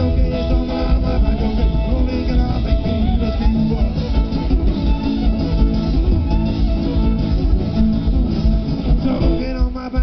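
Live band playing, with plucked strings over a steady bass and drum beat. The sound thins for a moment near the end.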